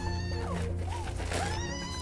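Two long, rising, high-pitched wailing cries, cat-like, one at the start and one about a second and a half in, over a steady low drone of music.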